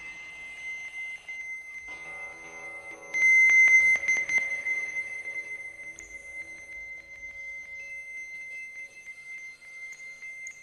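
Live ambient electronic music: a held high tone, joined about two seconds in by a low chord of steady tones. About three seconds in the high tone swells suddenly loud with a spatter of clicks, then eases back.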